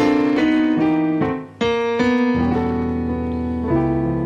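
Digital stage piano played in a slow run of sustained chords, a new chord struck every half second or so, with a brief gap about a second and a half in.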